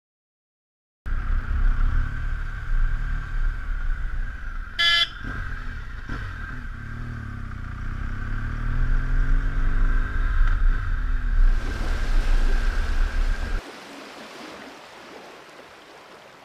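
BMW R1200GS LC boxer-twin engine running on the move, its pitch rising and falling with the throttle, with wind rushing on a helmet-mounted camera; a short horn toot about five seconds in. About three quarters of the way in the engine sound cuts off suddenly, leaving a quieter wind hiss.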